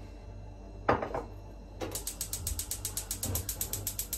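A sharp knock about a second in. Then, from about two seconds in, the rapid, even clicking of a gas hob's spark igniter, about eight clicks a second, as the burner under the pot is lit.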